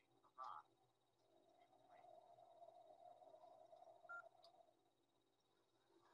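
Near silence, with faint audio from the ham radio receiving traffic relayed over the EchoLink system: a short blip about half a second in, then a faint murmur for about three seconds.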